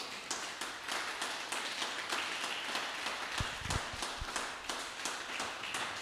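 Congregation clapping: a steady run of hand claps at an even pace. A few dull low thumps come about three and a half to four seconds in.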